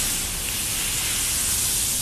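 Steady hiss of a high-pressure washer spraying water in a car-wash bay.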